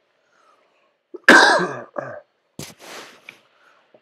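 A man coughing: one loud cough about a second in, a shorter one right after, then a brief noisy breath.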